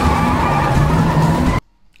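A car's engine running with its tyres squealing, a film sound effect; it cuts off abruptly about a second and a half in.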